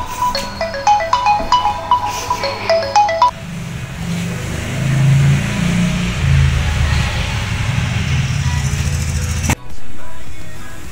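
A smartphone ringtone playing a quick melody of short chiming notes, which stops about three seconds in. A lower, steady background sound follows and cuts off suddenly near the end.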